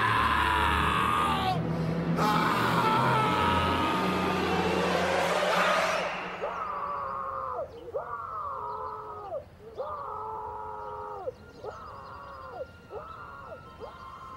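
A man's long, loud scream that cuts off suddenly about six seconds in. It is followed by eerie film-score music: a short phrase falling in pitch, repeated about once a second.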